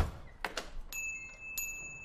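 A faint click, then a faint, steady, high-pitched ringing tone with a few light clicks over it, in a gap between bursts of drum-led music.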